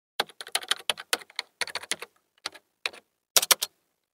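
Computer keyboard typing sound effect: a run of quick key clicks in uneven bursts with short pauses, ending in a fast flurry of clicks near the end.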